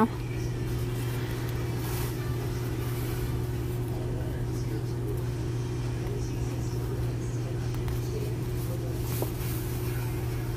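A steady low machine hum, such as from a fan or appliance, with a few faint soft rustles and a small tick about nine seconds in.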